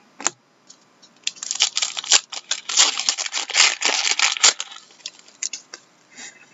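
A trading card pack's wrapper being torn open and crinkled. A dense crackling run goes from about a second in to about four and a half seconds in, with a sharp click just before it and a few scattered clicks after.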